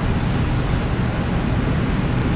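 Steady classroom room tone: an even hiss with a low hum underneath, and no distinct events.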